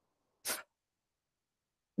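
A single brief, breathy puff of air from a person, about half a second in.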